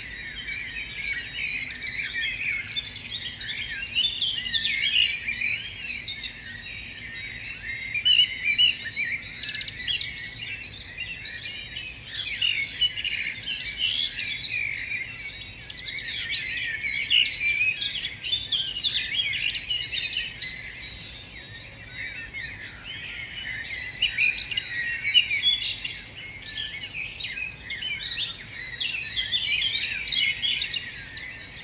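A chorus of many small songbirds chirping and singing at once, dense and continuous with overlapping high calls.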